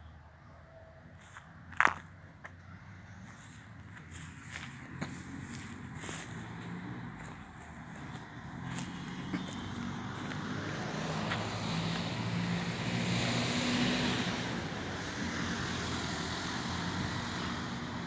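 A motor vehicle on the street goes by. Engine and tyre noise builds from about halfway through, is loudest a few seconds later, then eases. A single sharp click comes about two seconds in.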